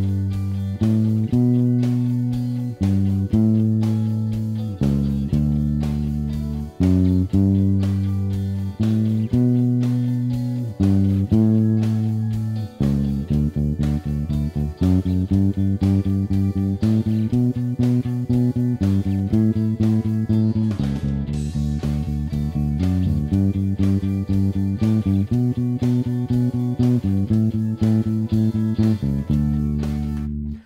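Electric bass guitar, a Fender Precision Bass, playing a D major bass line in which each chord change is approached from one scale note below. It starts with held notes about one a second, then from about 13 s in moves to a quicker, even run of short repeated notes.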